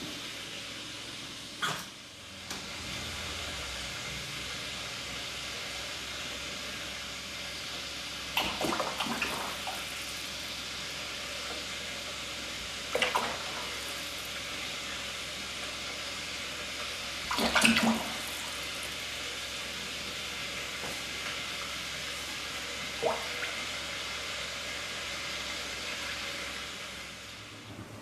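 Grape juice concentrate pouring in a steady stream into a plastic fermenter bucket, with a few light knocks of the container along the way.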